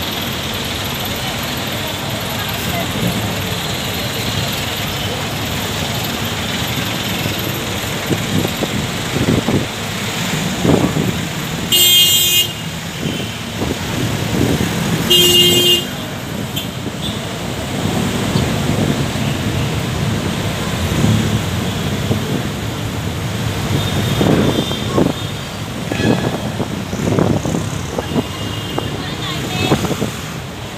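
Steady traffic noise from a congested city road, with a vehicle horn tooting twice, about three seconds apart, each toot under a second long.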